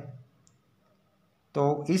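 A man's voice speaking Hindi trails off, then about a second of near silence broken by one faint click, and the voice starts again near the end.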